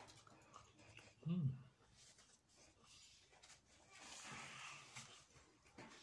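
Mostly near silence while a man eats. About a second in he gives one short hummed 'mm' of enjoyment, and near four seconds there is a faint rustle of handling the food.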